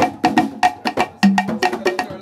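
Wood block and timbales played with drumsticks in a quick rhythm: dry, pitched wooden clicks with lower, briefly ringing drum strokes between them, about seven strokes a second.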